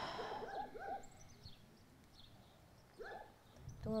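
Faint bird calls outdoors: a few short, curved calls near the start and again about three seconds in, with small high chirps in between. A breathy exhale sits under the first second.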